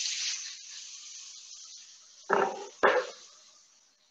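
Turkey mince and ground spices sizzling in a hot frying pan as they are stirred, the sizzle fading away over a few seconds.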